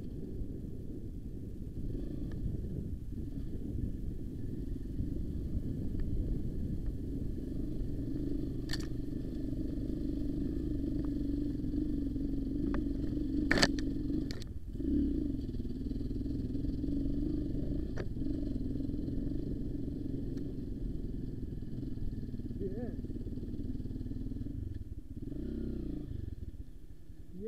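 Dirt bike engine idling steadily, with a sharp click about nine seconds in and a louder knock at about thirteen and a half seconds.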